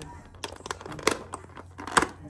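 Thin clear plastic takeout clamshell crinkling and clicking as a hand handles it and picks at the food inside: a handful of short sharp ticks, the loudest near the end.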